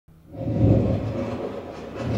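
Low rumbling stage sound effect that swells up from silence over the first half second and then holds; it is the eerie sound that is heard as something like a really big bird.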